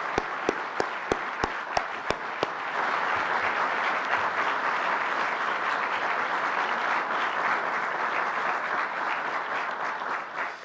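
Audience applauding. At first one person's claps stand out close and distinct, about three a second. About three seconds in, the applause swells louder and denser, then thins near the end.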